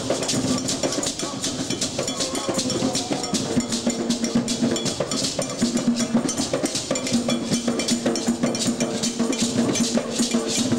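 Djembe hand drums played together in a steady, driving rhythm, with a bright bell-like struck pattern on top.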